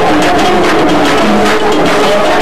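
Live Moroccan folk band playing loudly: a plucked long-necked lute carries the melody over a steady beat of hand drums.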